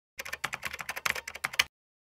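Computer keyboard typing: a quick run of key clicks lasting about a second and a half, the last one the loudest.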